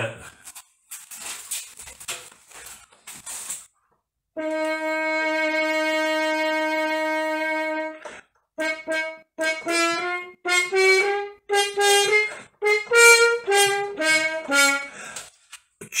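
French horn playing one long held note for about four seconds, then a quick phrase of short, separated notes moving up and down in pitch. It is preceded by a few seconds of faint rustling.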